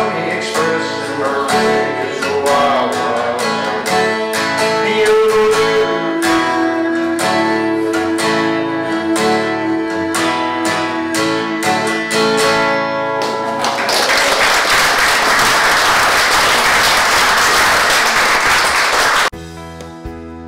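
Acoustic guitar played fingerstyle through the closing bars of a folk song, ringing out. About fourteen seconds in, audience applause takes over and runs for about five seconds before cutting off suddenly just before the end.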